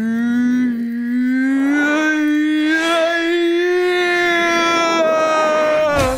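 A man's voice holding one long, drawn-out slow-motion yell, a single vowel lasting about six seconds. Its pitch rises slowly over the first second or two, then holds steady until it breaks off.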